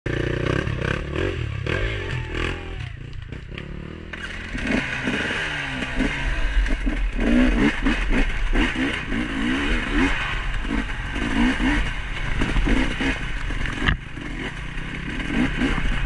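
Dirt bike engine revving up and down with the throttle as the bike climbs rough trail, with a run of short throttle surges through the middle.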